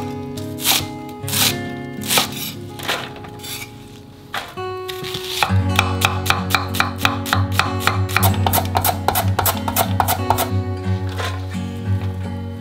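Chef's knife chopping on an end-grain wooden cutting board, over acoustic guitar background music. First come single cuts, a little under a second apart, through garlic chives. About halfway through, a quick, even run of about four cuts a second starts as an onion is sliced.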